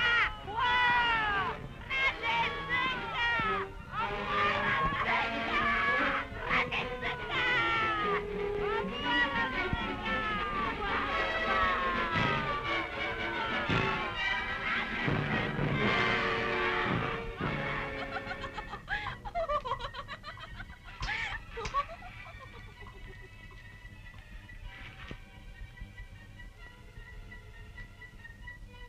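Several women shrieking and yelling over film music for about the first eighteen seconds. After that the commotion fades, leaving quieter music with held notes.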